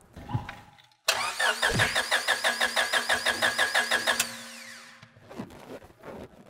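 Starter motor cranking a 20-year-old Honda Civic's four-cylinder engine, a rapid even chug of about six or seven pulses a second for about three seconds. It stops suddenly without the engine catching.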